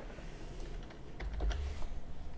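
A few computer keyboard keystrokes, typed one at a time while a text prompt is edited and sent, with a low rumble about a second in.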